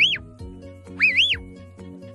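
A sheepdog handler's whistle commands to a working sheepdog: two clean whistle calls, each rising, dipping and rising again, one right at the start and one about a second in. Background music with sustained notes runs underneath.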